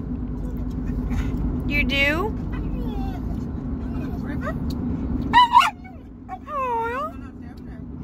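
Pit bull making 'talking' vocalizations: whining, howl-like calls that slide up and down in pitch. There is a rising call about two seconds in, a short loud one just past five seconds, and a call that dips and rises again near seven seconds. Under it runs the steady drone of the moving car, which fades after about five seconds.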